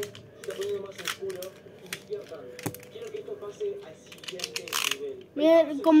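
A Beyblade spinning top rattling and clicking irregularly against a plastic stadium as it winds down, with faint voices in the background.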